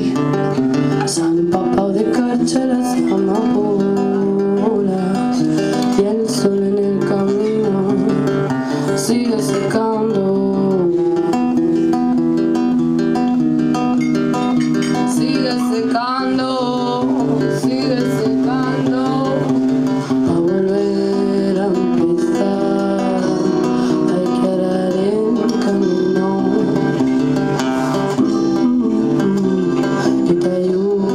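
Live band music: acoustic and electric guitars played together with a singer's voice over them.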